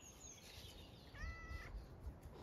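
A cat gives a short, faint meow a little over a second in, holding one pitch for about half a second. Faint high bird chirps come near the start.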